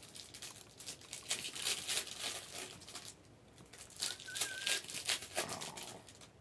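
Crinkling and rustling of plastic wrapping being handled, in irregular spells with a short lull about three seconds in. A faint, brief wavering whistle-like tone sounds about four seconds in.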